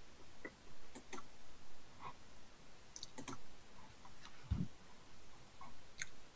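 Faint, irregular clicks from a computer being worked by hand, several in quick pairs, with one dull low thump a little past the middle.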